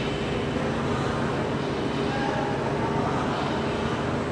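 Steady background noise with a low hum underneath.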